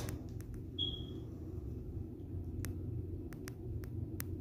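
Quiet room tone of a small tiled room: a steady low hum with a few faint clicks and one short high squeak about a second in.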